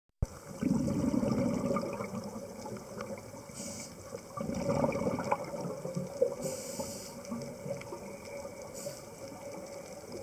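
Scuba diver breathing through a regulator underwater: two long rumbles of exhaled bubbles, about a second in and again around five seconds, with short hisses between them.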